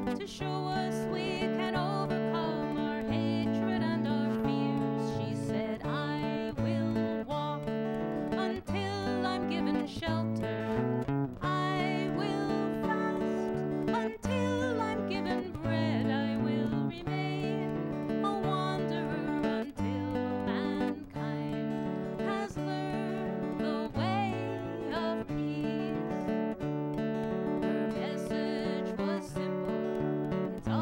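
Folk song performed live: a woman singing over her own strummed cutaway acoustic guitar, with steady chord strokes throughout.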